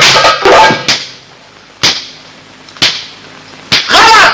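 Egyptian goblet drum (tabla) being hand-played: a run of drumming dies away about a second in, then three single sharp strikes follow, about a second apart.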